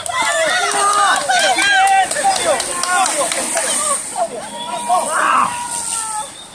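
Roadside spectators shouting encouragement to cyclists crossing the finish line, several voices calling out over one another.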